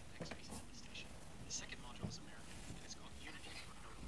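Faint, indistinct speech, low in level, with soft hissing consonants and no clear words.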